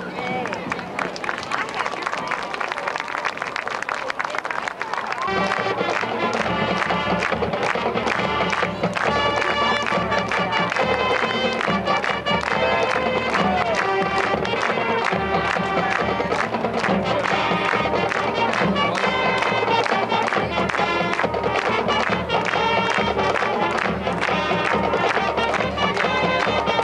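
High school marching band playing on the field. About five seconds in, the full band with brass, low horns and drums comes in and plays on with a steady beat.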